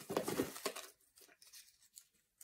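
A small cardboard box shaken rapidly, its contents rattling and sliding inside. The shaking stops about a second in, leaving only faint handling taps on the cardboard.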